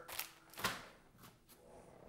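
A plastic-sleeved pack of decal paper being handled and set down on a paper-covered table: a few short crinkles and taps.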